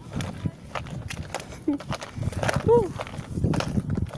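Irregular footsteps and rustling handling noise of someone moving through garden vegetation, with a short voiced call that rises and falls in pitch a little before three seconds in.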